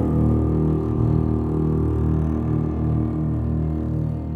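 Chamber ensemble playing contemporary concert music: a loud, dense cluster of sustained low notes that pulses and wavers.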